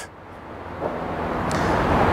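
A road vehicle approaching, its engine and road noise growing steadily louder.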